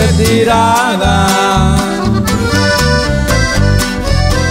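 Norteño band music from a live recording: an accordion leads the melody over strummed guitar and a bouncing bass line, with no singing.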